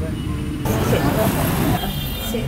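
Road traffic rumbling steadily, with people's voices talking over it.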